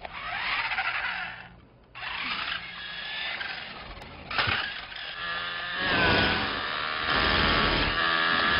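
Small electric motor of a remote-control toy car whining as it drives, its pitch rising and falling with speed. It cuts out briefly about two seconds in and runs louder from about six seconds in.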